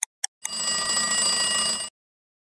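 A timer sound effect: the last two clock ticks, then a bell ringing for about a second and a half before cutting off abruptly, marking time up for the activity.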